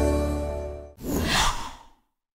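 The held chord of a short logo jingle fades out in the first second, followed by a breathy whoosh that swells and dies away over about a second.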